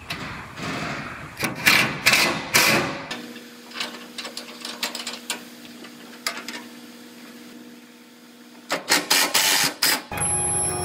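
Cordless impact driver hammering fasteners into a truck bed's sheet-metal corner panel in short loud bursts: several in the first three seconds, then more near the end after a quieter stretch of faint steady hum.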